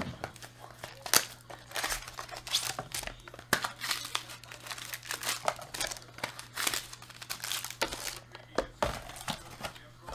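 Foil trading card pack wrappers crinkling and tearing as they are handled and opened, in quick irregular rustles over a low steady hum.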